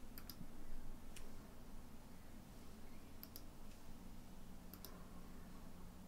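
Several faint computer mouse clicks, mostly in quick pairs, spaced a second or two apart, over a faint steady low hum.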